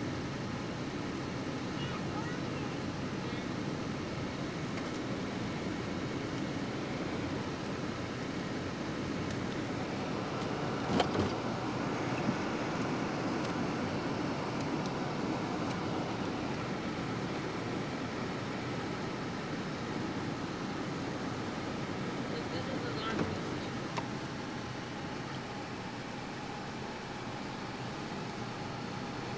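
Car driving, heard from inside the cabin: a steady road and engine noise, with a few sharp knocks around the middle.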